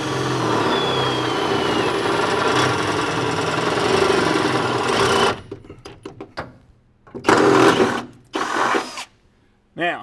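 Cordless drill with an 11/16-inch bit boring up through a pickup's steel bed floor, running steadily for about five seconds. After a short lull it gives two shorter bursts.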